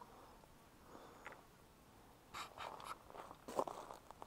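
Crinkling and rustling of plastic zip-lock bags being handled, in two short bursts over the second half.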